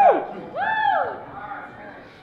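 A voice calling out twice in long whoops, each rising and then falling in pitch, the second starting about half a second in and held longer, over a low room murmur.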